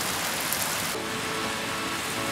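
Steady rushing, hissing noise of water. About halfway through, the top of the hiss drops away and faint steady tones come in.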